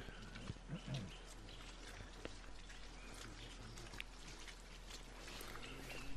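Quiet outdoor background with faint, scattered light ticks and a brief faint voice about a second in.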